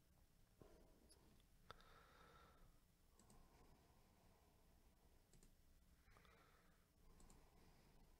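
Near silence: room tone with a few faint clicks, the sharpest about two seconds in.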